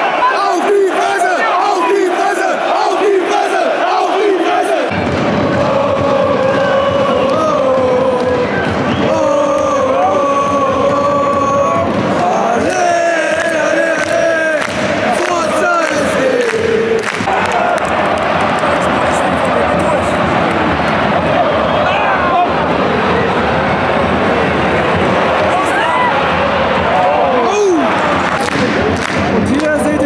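A large football crowd of supporters singing chants together in a stadium, many voices on long held notes, with hands clapping along.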